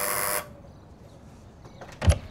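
Door-entry intercom buzzer sounding as its button is pressed: a steady electric buzz that cuts off suddenly about half a second in.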